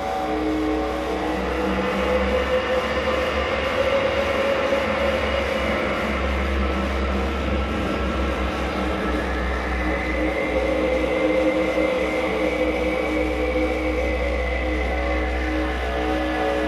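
Live death-industrial noise music: a continuous dense wall of distorted noise over a steady deep rumble, with held droning tones that slowly waver in pitch.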